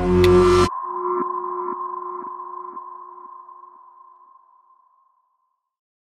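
Electronic logo sting. Loud music cuts off suddenly under a second in, leaving a ringing electronic tone that pulses about twice a second and fades away over the next four seconds.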